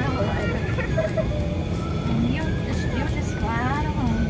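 Golf cart driving along a paved lane: a steady low rumble of the moving cart and air rushing past. A voice speaks in short snatches over it.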